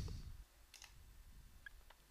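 A few faint, separate computer mouse clicks over a quiet room background.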